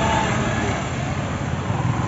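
Busy street traffic, with motorbikes and cars passing close by: a steady mix of engine and road noise.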